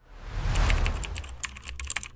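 Transition sound effect: a low whoosh swells up about half a second in, then a run of quick keyboard-typing clicks sets in and grows denser toward the end, typing out a web address on an end card.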